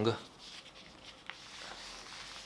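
A large paper poster rustling and crinkling faintly as it is handled and spread out by hand, with one small tick about a second in.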